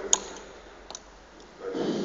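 Two clicks from a small hand-held fibre-splicing tool: a sharp one just after the start and a fainter one about a second in. A short breathy sound follows near the end.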